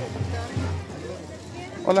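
Tamborazo band music from a distance, with a steady low bass line, under crowd chatter; a voice says "hola" at the very end.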